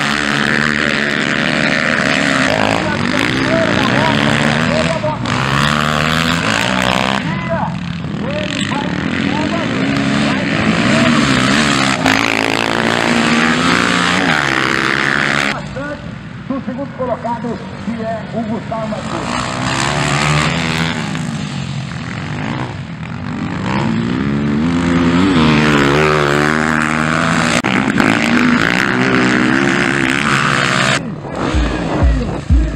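Dirt bike engines revving hard as motocross bikes race through corners, pitch rising and falling with each throttle change and gear shift. The sound changes abruptly twice, about seven seconds in and again about halfway.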